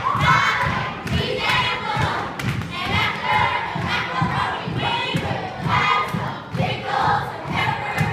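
A group of children chanting a song together, loudly, over a steady beat of stomping feet on a wooden floor, about two to three thumps a second.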